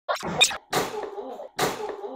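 A llama spitting: three sudden, sputtering sprays less than a second apart, each dying away quickly.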